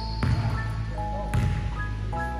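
Basketball bouncing on a hardwood gym floor, two bounces about a second apart, with music playing under it.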